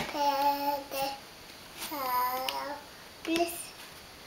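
A toddler's voice in four short, drawn-out sung syllables, the longest near the middle falling in pitch at its end. A single sharp tap comes right at the start.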